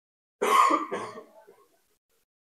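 A man clearing his throat once, about half a second in, with a harsh rasp that trails off over about a second.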